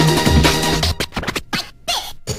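Oldskool UK breakbeat track: breakbeat drums and heavy bass that cut out about halfway through into short, choppy stabs with gaps and turntable scratching, before the beat drops back in.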